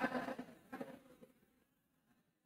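A man's voice trailing off in the first half second, a faint brief sound just under a second in, then quiet room tone.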